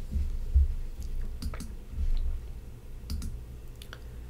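Faint clicks and a few low thumps from a computer mouse and desk handling near the microphone during a pause in the talk. The last clicks come just before the next slide appears.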